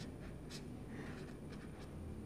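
Felt-tip marker writing figures on paper: a few faint, short scratching strokes.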